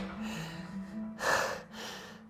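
A man's hard, quick breaths as he strains through a set of a cable back exercise: two sharp exhalations in the second half, over soft background music.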